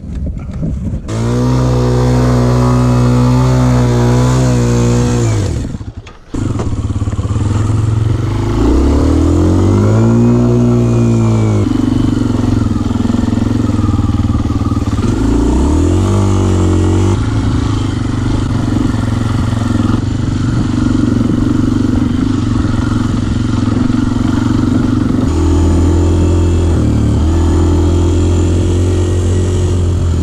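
Kawasaki KLX trail bike's single-cylinder four-stroke engine, on a bike with throttle trouble. It first hangs at a steady high rev for about four seconds and cuts out abruptly. It then revs up and down a few times and settles into steady running under way.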